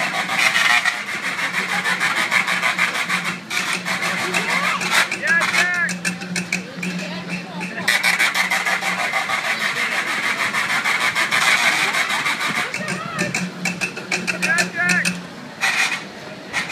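Kiddie-ride car's electric horn buzzing in long presses of about four seconds each, twice, with a shorter press near the end, over a steady low hum. A small child's squeals come between the presses.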